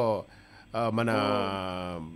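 A man speaking Telugu: after a short pause, he draws out one long syllable at a steady, slowly falling pitch.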